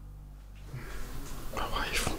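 A man's breathy, whispery voice without clear words. It starts about half a second in and grows louder, over a steady low hum of room tone.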